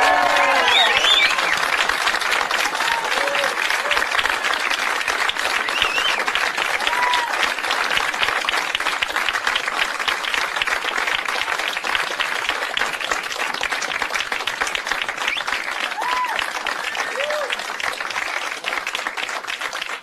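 Audience applauding and cheering to welcome a band on stage, with a few short shouts among the clapping. The applause slowly dies down toward the end.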